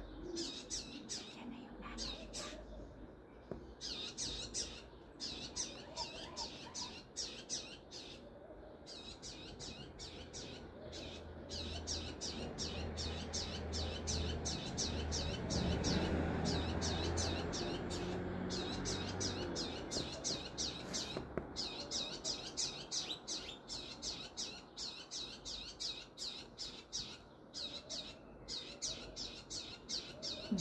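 Small birds chirping outdoors: a fast, steady run of high, short chirps that goes on without a break. A low rumble swells and fades under them in the middle.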